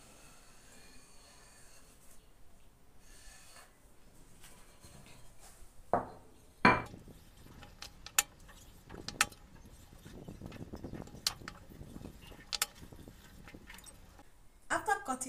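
Scissors cutting out Ankara fabric circles, with soft rustling of the cloth being handled. Two louder knocks come about six seconds in, followed by several sharp snips or clicks in the second half.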